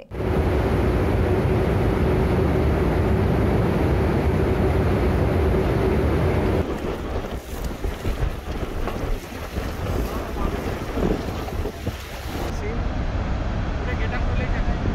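Wind buffeting the microphone over choppy, flood-swollen reservoir water, with waves slapping, and a steady low hum underneath. After about six and a half seconds the hum stops and the sound turns to uneven splashing and swirling water.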